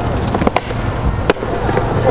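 BMX bike tyres rolling over a concrete skatepark with a steady rumble, broken by a few sharp clacks: about half a second in, just past a second, and near the end.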